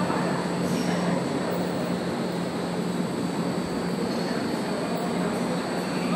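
Steady rushing background noise with a constant low hum, the ambient din of an indoor show-jumping arena.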